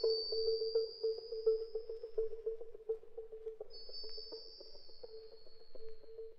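Electronic synth music: a pulsing mid-pitched synthesizer tone repeating about three times a second, under a high whistling tone that slowly glides down, fades out about halfway and comes back about two-thirds of the way in. Faint clicks run through it.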